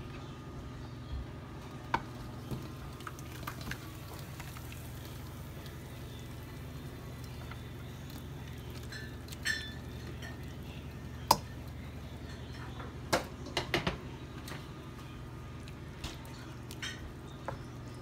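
Scattered knocks and clinks of a pot and spoon against a metal roasting pan as thick sausage-and-vegetable gravy filling is scooped in and stirred, over a steady low hum. The sharpest click comes a little past the middle, with a cluster of knocks after it.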